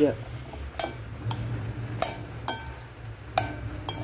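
A utensil stirring a vegetable salad in a cut-glass bowl, clinking against the glass about six times at irregular half-second to one-second gaps, some clinks ringing briefly, over wet scraping of the dressed vegetables.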